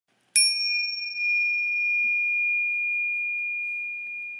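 A single struck, bell-like chime a moment in, ringing on as one clear high tone that holds steady and only slowly fades.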